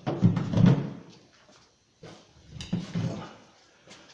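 Handheld power tools being picked up and set down on a table: two spells of knocks and rustling, with a sharp click near the middle of the second.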